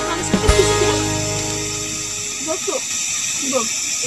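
Background music fades out over the first two seconds, leaving the steady hiss of a portable butane canister stove under a pot of boiling water and noodles, with brief voices over it.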